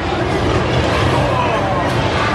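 Indistinct voices and chatter of bumper car riders over a steady low hum.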